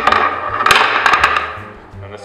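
Metal clanking and clicking from a hand-worked letterpress platen press: a loud knock at the start, then a quick run of sharp clicks and rattling about a second in that fades away.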